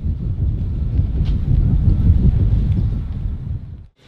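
Wind buffeting an outdoor camera microphone: a loud, gusting low rumble that cuts off suddenly just before the end.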